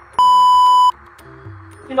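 A censor bleep: one steady, high-pitched beep lasting under a second, blanking out a swear word.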